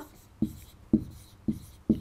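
Marker pen writing on a whiteboard: four short strokes, about one every half second.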